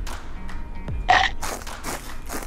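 A snack chip crunching as it is bitten and chewed, over background music, with a short throaty vocal sound about a second in.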